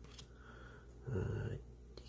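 Quiet handling of trading cards: soft paper cards being slid and flipped by hand, with a faint click near the start and a brief soft rustle about a second in.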